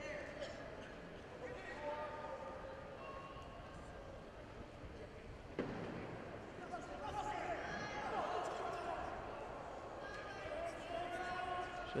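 Gym ambience from a wrestling mat: scattered voices and shouts from the crowd and corners, with a single sharp thud about five and a half seconds in.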